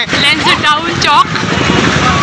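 Motorcycle engine running close by in street traffic, with a voice over it in the first second.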